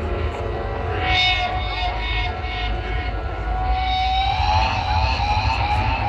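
Live rock concert sound over a festival crowd: a sustained, siren-like tone from the stage PA rises slowly in pitch from about halfway through, over the crowd's noise.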